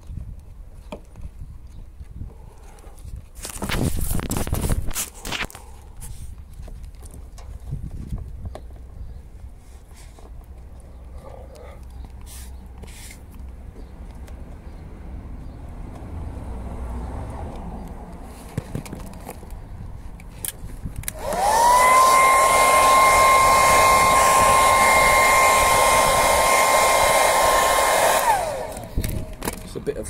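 Electric hot-air blower switched on and run steadily with a whine for about seven seconds, then spinning down. It is on its cold setting, blowing moisture out from under paint protection film. A few seconds in there is a brief hiss, with faint handling clicks around it.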